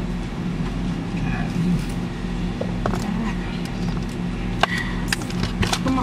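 Idling car engine, a steady low hum heard inside the cabin, with a few sharp clicks and knocks in the second half as the order's drinks and bags are handled.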